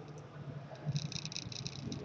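Quiet room tone with a faint, steady low hum. About a second in, a brief, faint high-pitched pulsing sound.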